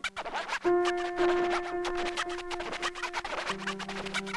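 Hip-hop instrumental with turntable scratching: quick pitch sweeps at the start, then a held note over the drums, with the bass line coming back near the end.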